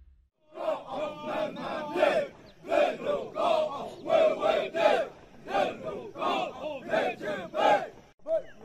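A group of uniformed trainees chanting a running cadence together: short, loud shouts repeating two to three times a second, starting about half a second in.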